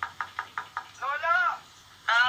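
Knocking on a door as a radio-drama sound effect: a quick run of about five knocks a second. About a second in, a person calls out once in a drawn-out voice that rises and falls.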